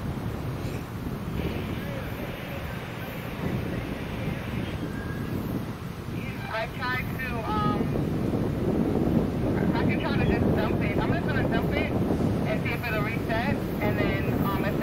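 Wind buffeting the microphone, growing stronger in the second half. Short high chirping calls come in about halfway and again near the end.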